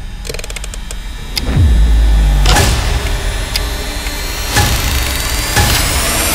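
Horror-trailer sound effects: a quick run of rapid clicks, then a deep boom that drops in pitch about a second and a half in, followed by swelling whooshes and a dense layered sound that builds toward the end.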